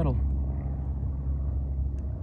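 A steady low mechanical hum, like an idling engine, runs under the tail of a spoken word.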